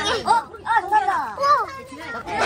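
People talking: speech only, though the recogniser caught no words.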